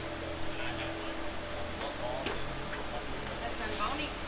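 Ice arena ambience: a steady low machine hum with a held tone that fades about halfway through, under faint distant voices.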